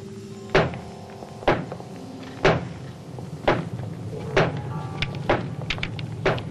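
Footsteps of two men walking on a hard prison-corridor floor, heavy steps about one a second, over faint music.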